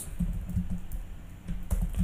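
Typing on a computer keyboard: irregular key clicks, with a short lull about a second and a half in.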